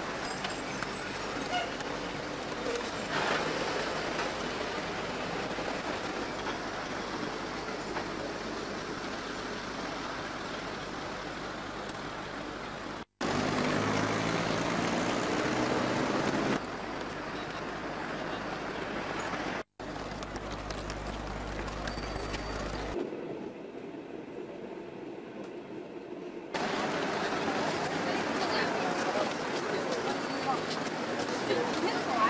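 Urban street traffic: a steady mix of motor vehicle engines and street noise with indistinct voices, changing abruptly at several cuts between shots. Two brief dropouts break the sound near the middle. A louder engine stands out for a few seconds in one shot.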